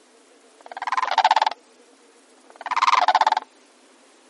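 A croaking animal call, a rapid rattle of pulses lasting just under a second, heard twice about two seconds apart.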